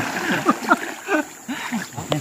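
River water splashing as a man scoops it over his head, then a scatter of drips and droplets plopping back into the river.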